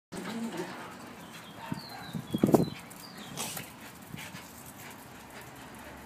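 Yorkshire terrier puppies and a small white dog play-fighting, with short vocalizing from the dogs that is loudest about two and a half seconds in.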